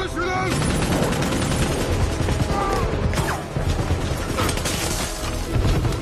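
Film action soundtrack: rapid automatic gunfire in dense bursts, mixed with a music score.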